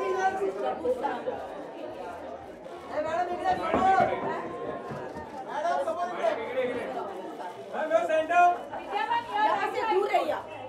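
Chatter of several people talking over one another in a large hall, voices rising and falling without any one clear speaker.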